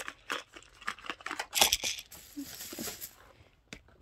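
Cardboard medicine box being opened by hand: irregular clicks and rustles of the flaps and packaging, with a louder crackle about a second and a half in and a stretch of crinkling just after.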